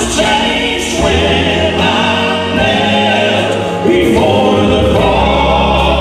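Southern gospel male quartet singing in harmony into microphones, over a held low bass line that moves to a new note every second or two.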